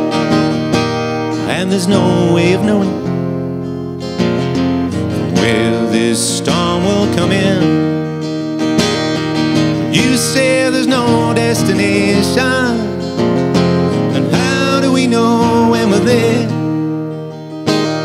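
Acoustic guitar strummed in a steady pattern of chords, with a singing voice over parts of it.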